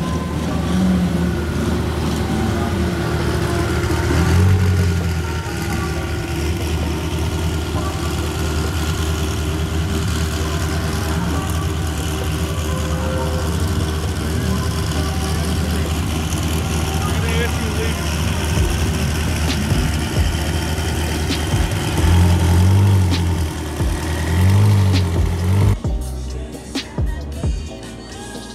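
SSC Tuatara hypercar's twin-turbo V8 running at low speed as the car creeps along, with brief revs about four seconds in and twice near the end.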